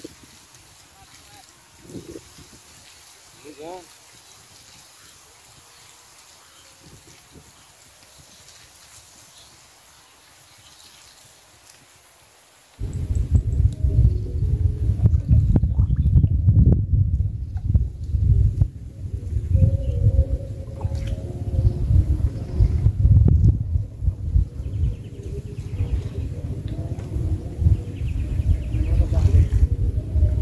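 A few faint splashes while a hooked fish is played at the surface, then about thirteen seconds in a sudden switch to loud, muffled low rumbling and knocking of water moving against an underwater camera.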